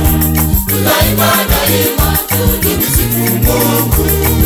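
Swahili gospel song: a choir singing over a stepping bass line and a steady, fast, high percussion beat.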